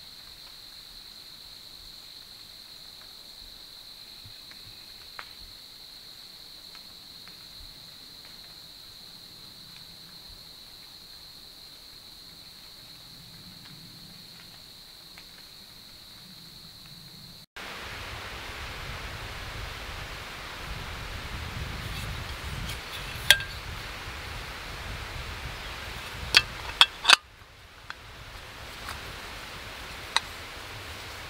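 A steady high-pitched insect drone in quiet woodland for about the first half. Then wind rumble on the microphone, with a few sharp clicks and clinks near the end.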